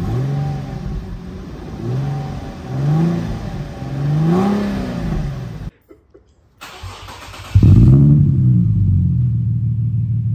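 An Infiniti G37's 3.7-litre V6 blipped four times through its previous exhaust, each rev rising and falling. After a brief silence the same engine, now fitted with an ISR single-exit exhaust with resonator, is revved once and settles into a steady idle, clearly louder than the first part.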